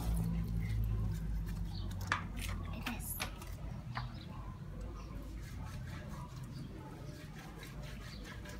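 A wet cloth being rubbed by hand on the ribbed concrete scrubbing board of a laundry sink, giving a few scattered soft squishes and clicks. Under it is a low rumble that fades after the first few seconds.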